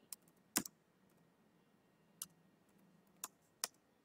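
Computer keyboard keystrokes: about five faint, irregularly spaced key clicks as a few letters are typed.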